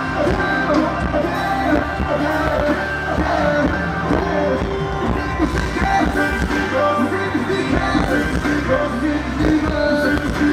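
Live concert music: a singer's voice over amplified backing music with a continuous bass line, at an even, loud level.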